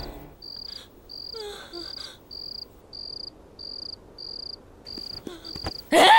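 A cricket chirping in short, evenly spaced chirps, a little under two a second, over a quiet background.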